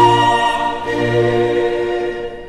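Mixed choir with orchestra performing Brazilian colonial sacred music, singing two long held chords that fade toward the end.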